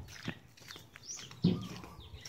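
Small birds chirping in short rising and falling calls, with a loud low thump about one and a half seconds in.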